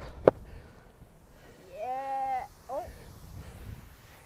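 A sharp click, then about two seconds in a person's drawn-out, high vocal cry lasting under a second, followed by a short wavering call.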